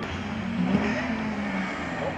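Rally car engine heard at a distance under load, its note rising slightly about halfway through and then easing.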